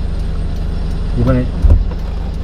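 Hyundai Porter manual-transmission truck's engine idling steadily, heard from inside the cab, with the left turn signal ticking faintly. A short low knock near the end as the gear lever is worked.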